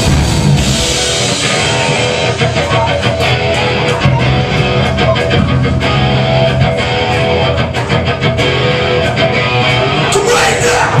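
A live rock band playing loud electric guitars and drums, with no vocals.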